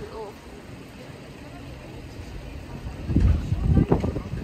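Street noise on a paved city square: a low rumble rises sharply about three seconds in, typical of a motor vehicle passing close. A brief voice sounds at the very start.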